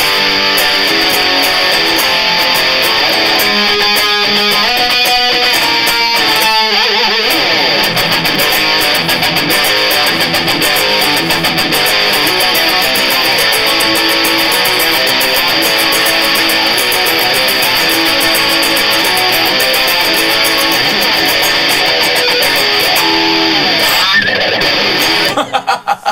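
Fernandes Revolver electric guitar played through an amp with heavy distortion: continuous riffing and lead playing, with a fast run of notes a few seconds in, stopping abruptly near the end.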